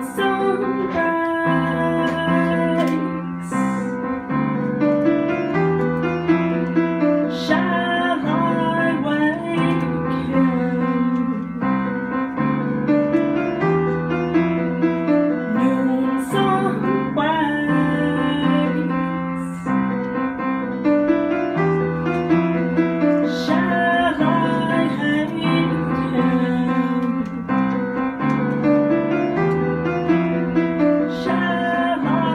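Live song on piano: a repeating pattern of chords, with a woman singing over it at intervals.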